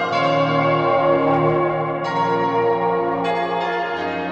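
Background music of sustained, layered tones, with new chords coming in about two seconds in and again just after three seconds.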